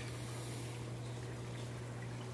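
A steady low hum under a faint, even hiss, with no distinct events.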